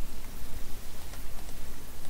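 Crackling hiss with a steady low hum from a noisy microphone picking up no speech.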